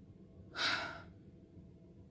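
One audible breath, a sigh, about half a second in, lasting about half a second.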